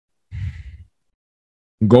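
A man's short breath close to the microphone, lasting about half a second, followed near the end by speech starting.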